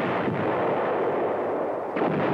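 Explosions and gunfire from a tank firing range: a dense, continuous din of blasts. A fresh sharp blast comes right at the end.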